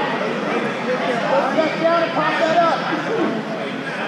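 Crowd of spectators and coaches talking and calling out at once, several voices overlapping over a steady hubbub, with louder calls in the middle.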